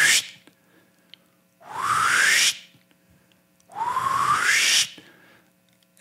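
Three whooshes, each about a second long and rising in pitch, evenly spaced with short quiet gaps between them.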